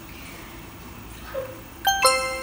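Quiet room tone, then near the end a bright ringing chime sound effect that starts sharply and steps down to a lower held note.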